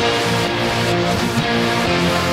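Isolated guitar, piano and string stem of a pop song: guitar strumming chords in a steady rhythm, with no drums or vocals.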